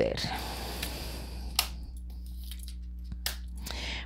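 Tarot cards being handled on a tabletop: a soft rustling slide of cards, then two light taps about a second and a half apart.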